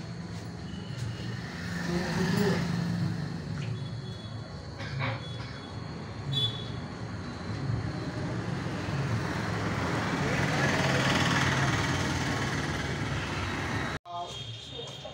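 Indistinct low voices over a steady, noisy background.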